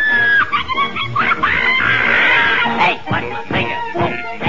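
Cartoon orchestral score playing, with a character's voice yelling over it.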